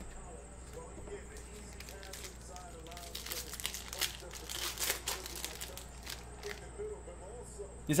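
Glossy trading cards being flipped and slid off a hand-held stack one after another: light scraping and ticking of card against card, busiest in the middle few seconds.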